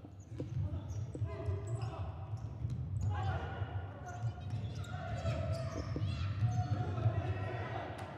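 Live court sound of a futsal match: the ball being kicked and bouncing on the hardwood floor, with a few sharp knocks, and players' shouts echoing in a large, near-empty sports hall.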